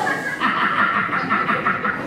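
Audience laughing in a hall, rhythmic laughter rising about half a second in, over scattered voices.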